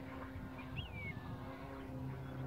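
A single bird call about a second in, a short whistle that falls in pitch, over a low outdoor rumble and a faint steady hum.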